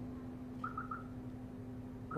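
A pause in speech: a steady low hum, with three quick faint chirps at one pitch about two-thirds of a second in.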